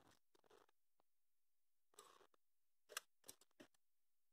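Near silence with a few faint metallic clicks from a piston ring spread in piston ring pliers as it is fitted over a piston into the second ring groove. The clicks come in the second half, the one about three seconds in the loudest.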